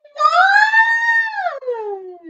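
A woman's voice holding one long, drawn-out sung or wailed note that rises slightly, holds, then glides down in pitch and trails off near the end.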